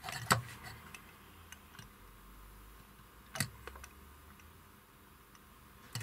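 Test-lead probe tips clicking and tapping on the solder joints of a circuit board as it is handled: a sharp click shortly after the start, another about three and a half seconds in, and faint ticks between.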